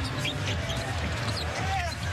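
Arena sound of live basketball play: a ball being dribbled on the hardwood court and sneakers squeaking in short chirps, over a steady crowd murmur.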